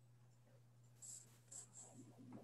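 Near silence: a steady low microphone hum, with a few faint, brief rustles in the second half.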